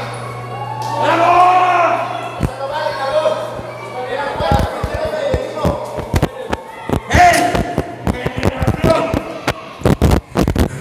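Men's voices shouting over a low steady hum that cuts out about four seconds in, then a run of irregular thumps and knocks mixed with more shouting.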